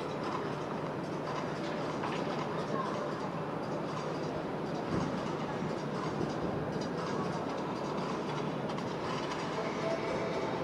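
Steady background noise of a show-jumping arena with no clear pattern, with faint voices in it.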